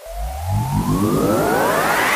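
A rising synthesizer sweep in electronic music: a stack of tones climbing steadily in pitch and growing louder, building toward a drop.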